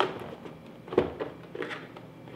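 Hands rummaging in a cardboard product box: a few light rustles and knocks, with one sharper knock about a second in.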